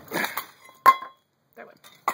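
Enamelware bowl handled on a cluttered shelf: some rustling, then one sharp clink with a short ring about a second in.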